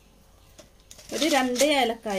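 Speech: a voice talking, starting about a second in after a second of quiet room tone.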